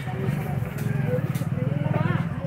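Busy street-market sound: people talking over a small engine running steadily close by, with a low, evenly pulsing note.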